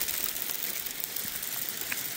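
Rain falling hard mixed with tiny hail: a steady hiss, with scattered faint ticks of drops and hail pellets striking.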